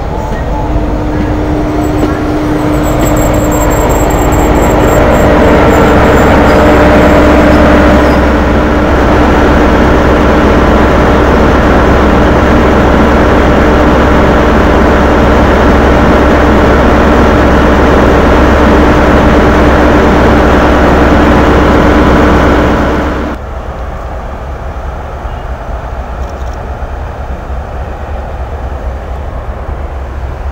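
Diesel train engine running loudly close by, a steady drone with a held tone that builds over the first few seconds. It stops abruptly about 23 seconds in, leaving quieter station noise.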